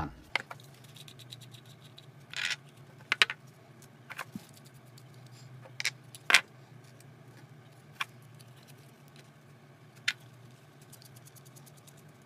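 Plastic PB pipe fittings being handled and assembled: scattered sharp clicks and knocks of hard plastic parts, about ten over the stretch, as caps are unscrewed and inner parts are pulled out and fitted into a cross tee.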